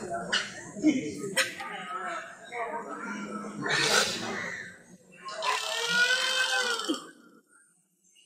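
A man's voice crying and wailing, with a long drawn-out wail about five to seven seconds in.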